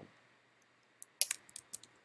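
Typing on a computer keyboard: a quick run of about seven or eight keystrokes starting about a second in, entering text at a command-line prompt.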